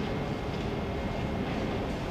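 Steady low rumbling background noise in a large stone-walled, marble-floored hall, with a few faint taps.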